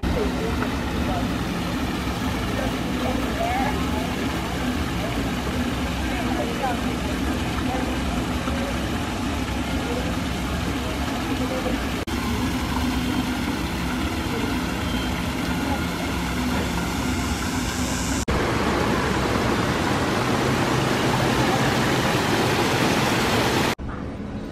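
Steady rushing and splashing of a small garden waterfall pouring into a rock pond, with faint voices of people nearby. The sound changes abruptly twice, and the last stretch is a little louder.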